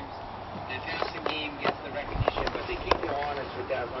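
A few sharp clicks and knocks, from a screen door and footsteps on a wooden deck, the loudest about three seconds in. A man's voice starts football play-by-play commentary near the end.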